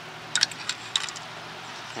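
Handling noise from a camcorder being refocused: a handful of light clicks in the first second, over a faint steady hum.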